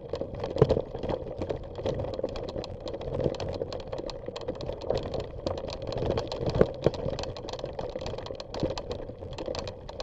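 Bicycle rolling over a rough, rutted dirt trail: the tyres crunch on the gravel while the bike rattles with a constant run of small clicks and knocks, a few harder jolts standing out, the loudest about half a second in and two more near the seven-second mark.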